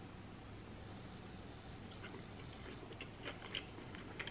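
A person chewing a bite of avocado sushi roll with crisp red cabbage. Faint crunches and clicks start about halfway through, the loudest two near the end, over quiet room tone.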